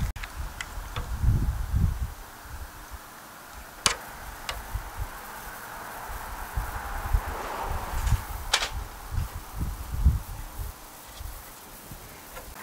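A marker pen drawn along a steel rule on a fiberglass ladder rail, a faint scratching for a couple of seconds in the middle, with a few sharp clicks from handling the pen and square and irregular low rumbles.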